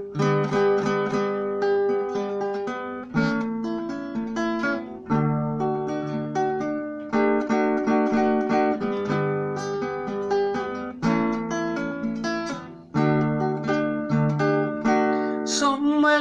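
Acoustic guitar strummed in an instrumental passage, a new chord struck about every two seconds and left to ring.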